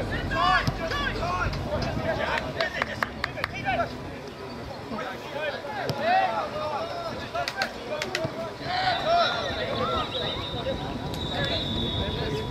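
Players and spectators calling and shouting on an outdoor football pitch, many short shouts one after another, with a few sharp knocks. A thin, steady high tone comes in for the last few seconds.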